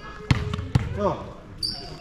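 A volleyball being struck: two sharp smacks about half a second apart, the first the louder.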